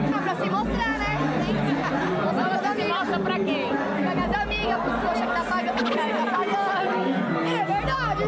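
Women talking and laughing in Portuguese over club music with a steady deep bass, typical of a baile funk party.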